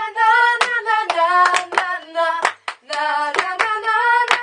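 Two girls singing an unaccompanied 'na na na' pop refrain together while clapping their hands in time, about two to three claps a second.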